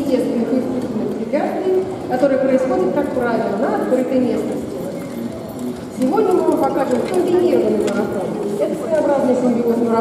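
Voices talking in a large indoor hall, with a single horse trotting in harness on sand, pulling a light carriage.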